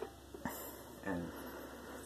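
A boy's voice saying a single short word, with one soft click about half a second in, over low room hiss.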